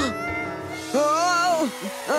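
High-pitched cartoon animal cries: a short swooping one at the start and a louder, wavering one about a second in, over background music with held notes.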